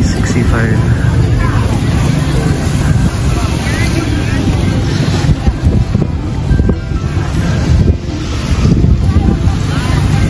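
Wind buffeting the microphone in a steady low rumble, with people's voices and music in the background.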